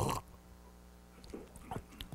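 A short sip from a ceramic teacup at the very start, then quiet over a steady low hum, with a few soft knocks near the end as the cup is set down on the table.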